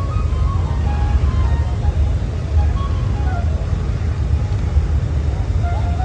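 Steady low outdoor rumble with faint distant voices in the background.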